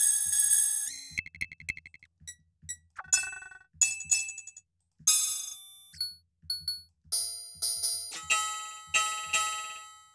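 Ableton DS Clang metallic percussion synth run through two flangers, playing a series of irregularly spaced electronic clang hits that ring and decay. Each hit has a different pitch and timbre as the rack's macros are randomized.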